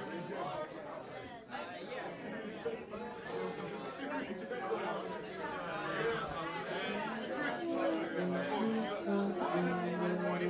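Crowd chatter: many people talking at once in a busy club room. Near the end a few short held instrument notes come through the talk.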